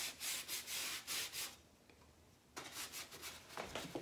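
Chip brush scrubbing liming wax into the crevices of a painted wood panel: a run of short bristly strokes about two a second, a pause of about a second in the middle, then more strokes.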